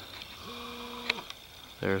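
A man's voice: a short held hesitation sound on one pitch about half a second in, then a spoken word near the end, over a faint background hiss with a couple of light clicks.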